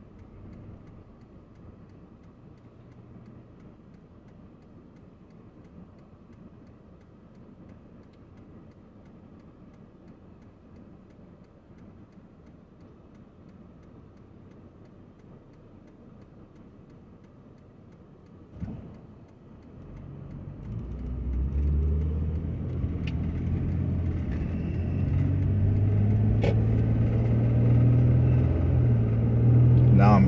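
A car heard from inside the cabin: a low, quiet idle while stopped, a brief thump about 19 seconds in, then the car pulling away, its engine and road noise rising sharply and staying loud to the end.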